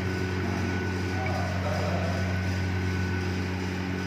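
A steady low hum under an even hiss, with faint voices briefly about a second in.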